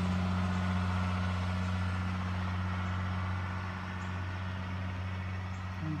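School bus engine running as the bus drives away, a steady low drone that slowly gets quieter.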